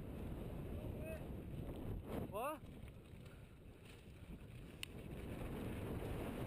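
Mountain bike descending a gravel downhill track, heard as a steady low rumble of wind on the helmet camera's microphone and tyres rolling over loose gravel. About two and a half seconds in comes a brief shout, its pitch dropping and rising.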